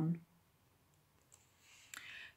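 The last spoken word trails off, then near silence broken by a faint tick and one sharper click just before the end: a computer click advancing the presentation slide.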